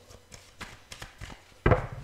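A hand handling tarot cards on a cloth-covered table: a few light taps, then a single louder thump near the end.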